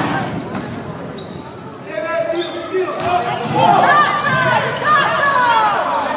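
Basketball game in a large hall: a ball bouncing on the court among players' voices, with several short high squeaks in the second half.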